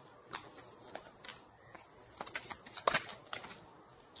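Tarot cards handled: faint, scattered light clicks and rustles, a little busier in the second half.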